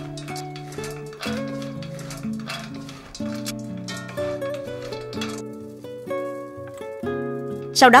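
Background music playing a slow melody of held notes over a steady low note. Underneath it, faint dry rustling and light clinks of wooden spatulas tossing crispy fried anchovies in a wok.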